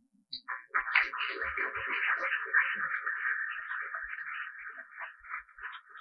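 Audience applauding, starting about half a second in and fading toward the end.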